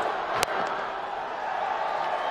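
Steady stadium crowd noise, with a single sharp crack of a cricket bat hitting the ball about half a second in.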